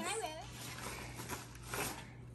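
Faint rustling of snack packaging being handled, over a low steady hum.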